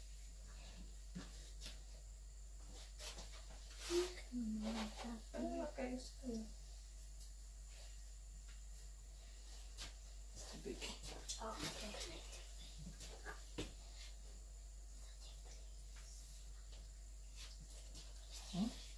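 Quiet kitchen room tone with a few faint, short voice sounds and scattered light clicks and knocks, as hands work a bowl of dough.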